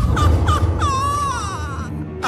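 Cartoon sound effects: a deep rumble that starts suddenly, under a high warbling cry. The cry gives a few short yelps, then one long wavering call that slowly falls in pitch.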